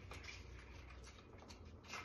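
Faint, scattered small ticks and patters from gloved hands pulling pomegranate seeds loose under water in a glass bowl.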